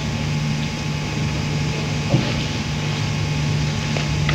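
Steady low hum with hiss, the room's background tone during a pause in the talk, with one brief soft sound about two seconds in.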